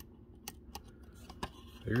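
A few light, sharp clicks as the pins of a large seven-segment LED display are pushed into the socket strips on a circuit board, seating it.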